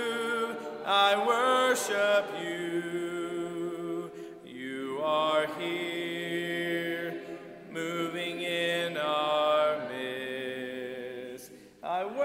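Congregation singing a hymn a cappella, many voices together, with long held notes and short breaks between phrases.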